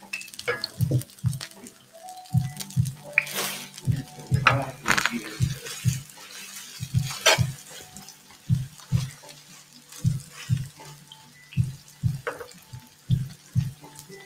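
Minari pancake batter sizzling in oil in a frying pan, with a few sharp clicks and crackles, over background music with a steady low beat.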